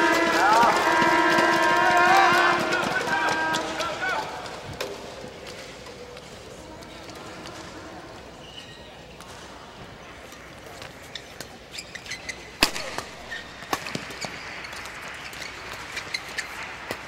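Spectators in a badminton hall shouting and cheering for about four seconds after a point, then fading to quiet hall ambience. Near the end a rally starts, with a series of sharp racket-on-shuttlecock hits, one much louder than the rest.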